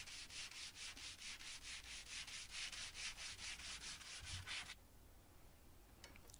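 Hand sanding a pine board with a sanding block: faint, quick back-and-forth scratching at about five strokes a second, stopping near the end.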